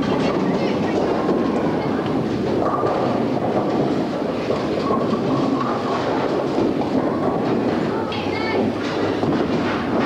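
Bowling alley din: bowling balls rolling down wooden lanes make a continuous rumble, under the chatter and calls of people around the lanes.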